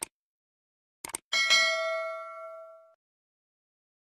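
Mouse-click sound effects: a single click, then a quick double click about a second in. A bell-like ding follows and rings out for about a second and a half. These are the sound effects of a subscribe-button and notification-bell animation.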